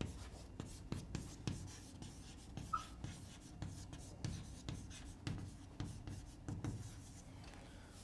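Chalk writing on a blackboard: a run of irregular light taps and scratches as a word is written, with a brief squeak about three seconds in, stopping about a second before the end.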